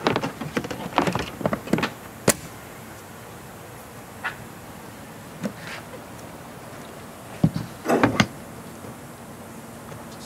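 Irregular clicks and knocks, a quick cluster in the first two seconds and another about three quarters of the way through, with a few single clicks between, over a steady background hiss.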